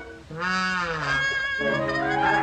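Cartoon orchestral score: the music breaks off briefly, then a brass note bends up and back down for under a second before held chords resume.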